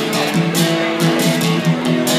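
Acoustic guitar strummed in a steady rhythm, chords ringing between strokes: the instrumental opening bars of a country song played live, before the singing comes in.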